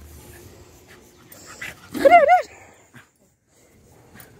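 A dog gives one short whine that rises and falls twice, about two seconds in, with faint rustling of fabric as it rolls on a cotton sheet.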